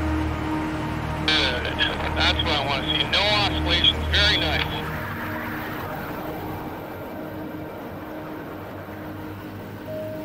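An indistinct voice over a steady low hum for the first half, after which the voice stops and the hum carries on more quietly.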